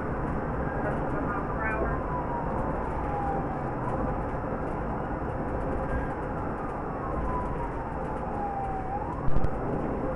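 Police car siren in a slow wail, its pitch sliding down over a few seconds and then back up, over steady road and engine noise, heard from inside the pursuing cruiser. A short knock near the end.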